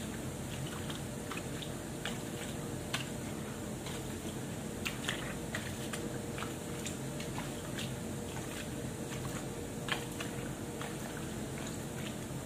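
Wet clothes being scrubbed and wrung by hand in a basin of water: irregular squelching and small splashes of wet fabric.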